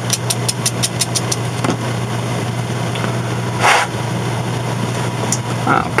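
Fine sandpaper rubbed in quick strokes over the edges of a ground-down steel soldering tip, about six strokes a second, stopping about a second and a half in. A single short scrape follows near four seconds, over a steady low hum.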